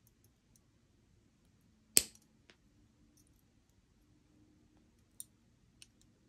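Steel jewellery pliers clicking against each other and the wire while wire-wrapping a loop: one sharp click about two seconds in, a softer one half a second later, and a couple of faint ticks near the end.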